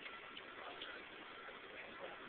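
Faint, even background hiss with a few light, irregular ticks: the guardsman's boot heels on the paved square as he steps off from the sentry box.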